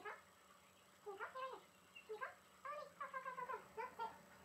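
Queensland heeler (Australian cattle dog) puppy, eight weeks old, whining and yipping: a series of about five short, high cries that rise and fall in pitch.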